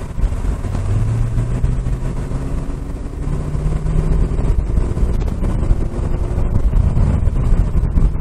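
2012 Corvette Grand Sport's 6.2-litre LS3 V8 running under way, heard from inside the cabin together with road noise. The engine note rises in pitch about three seconds in.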